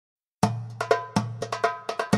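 Percussion playing the rhythmic opening of a Greek Macedonian folk song: sharp strikes that ring briefly, several a second in an uneven dance pattern over a low steady hum. It starts after a moment of silence.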